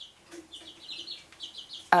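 A quick run of short, high chirps in the background, like a bird calling over and over, starting about half a second in and going on for over a second.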